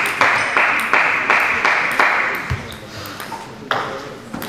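Table tennis ball struck and bouncing in quick succession, about three hits a second for some three seconds, each hit ringing in a large sports hall; a single louder knock comes near the end.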